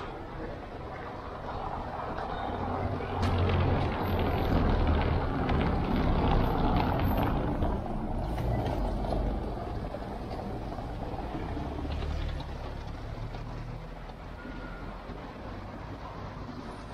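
A car driving past on a cobblestone street, its tyres rumbling on the stone setts. The rumble swells a couple of seconds in, is loudest for several seconds, then fades.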